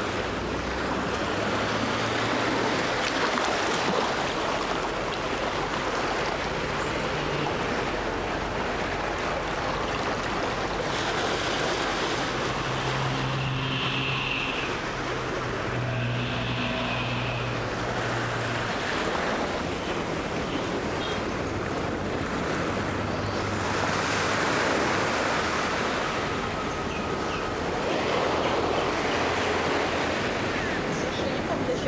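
Surf washing onto a sandy beach, a steady rush of water with wind on the microphone.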